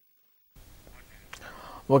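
About half a second of dead silence, then faint studio room tone with soft mouth clicks and a breath from a man about to speak. His voice starts right at the end.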